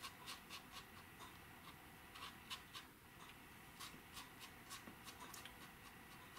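Faint, scratchy ticks of a small round watercolor brush dabbing rough, dryish strokes onto paper, spaced irregularly, several a second.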